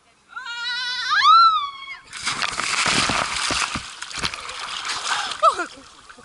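A girl's long yell, a rising and falling "a-a-a" of about a second and a half, as she jumps. It is followed by a loud splash as she hits the lake and about three seconds of water churning close to the microphone, with a short gasp near the end.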